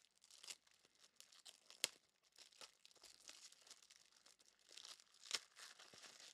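Trading cards being handled on a desk: faint rustling with scattered light clicks, the sharpest about two seconds in and about five seconds in.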